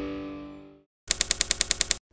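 A sustained music chord fades away, then after a brief silence a fast, even run of about a dozen sharp typewriter key strikes, a title-card sound effect.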